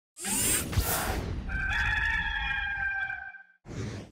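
A whooshing hit with a low boom, then a rooster crowing for about two seconds over a low rumble. It fades out just before the end.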